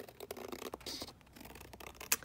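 Scissors cutting along the edge of layered, coffee-dyed paper, trimming a stitched pocket: faint, irregular snipping and scraping of paper.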